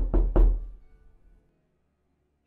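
Three loud, quick knocks on a door, a knocking sound effect, about a quarter second apart, ringing out briefly.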